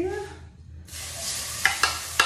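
Small shrimp dropped into hot oil in a wok, frying with a sizzle that starts suddenly about a second in. A few sharp clacks near the end as the wooden spatula pushes them off the plate.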